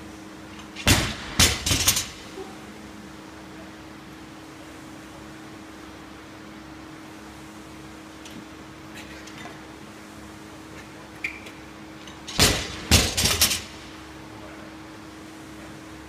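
A loaded barbell with rubber bumper plates (250 lb) dropped onto a concrete floor twice, about a second in and again near the end; each drop lands hard and bounces two or three more times. A low steady hum runs underneath.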